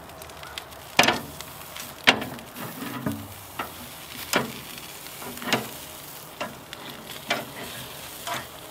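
Fatty beef ribs sizzling on a grill over a hardwood fire, with sharp clacks of metal tongs against the ribs and grill grates about once a second as the ribs are moved and turned.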